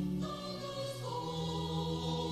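Slow choral hymn music: held chords that shift to new notes a few times.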